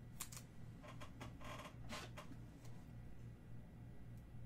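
Faint handling of trading cards and a clear plastic card holder: a few short scrapes and rustles as a card is slid and shuffled, over a low hum.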